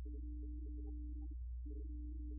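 Church organ playing held notes in the middle register, with a brief break about a second and a half in, over a steady low electrical hum.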